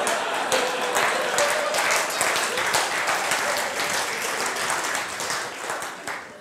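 Audience applauding, with some voices mixed in, dying away near the end.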